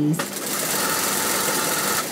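Toyota industrial sewing machine running at a steady speed, stitching a seam. It starts just after the voice stops and runs without a break until the very end.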